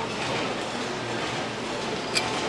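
Steady background noise of a busy market stall, an even rumbling hiss with no distinct knocks.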